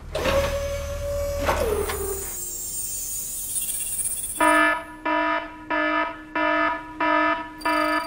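Electronic alarm of a simulated explosives-detection system, beeping about twice a second from about four and a half seconds in: the signal that the scanned car holds an ammonium-nitrate-based explosive. Before it come synthetic sound effects: a steady hum that slides down in pitch, then a high hiss.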